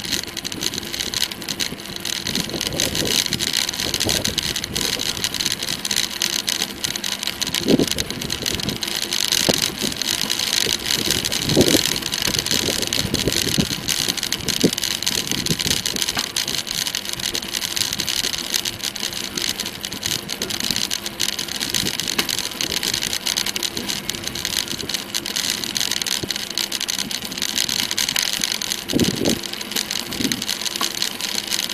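Steady rushing noise of a bicycle in motion on a tarmac lane: tyres on the road surface and wind over the microphone, with a few brief low knocks from bumps along the way.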